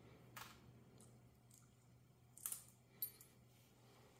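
Near silence broken by three faint, short clinks, one about half a second in and two more past the middle: small metal leatherworking parts and tools being handled on the bench.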